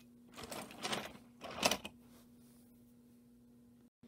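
Toy trains clattering as they are pushed by hand over plastic track: a few short rattles in the first two seconds, the last one the loudest, then only a faint steady hum.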